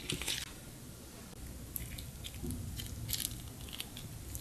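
Soft slime squeezed and worked between the fingers, giving faint sticky squishes and crackles in a few short clusters.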